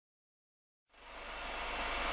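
Steady hiss with a constant low hum, fading in about a second in after complete silence: the background noise of an ROV inspection recording's audio track.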